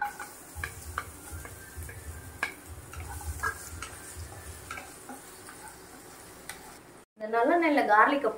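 Peeled garlic cloves dropping into hot oil in a non-stick kadai and frying with a light sizzle, while a wooden spatula scrapes and knocks against the pan in scattered short strokes. A woman starts talking near the end.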